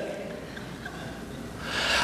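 A pause with faint room tone, then a man's quick, rising intake of breath near the end, just before he speaks again.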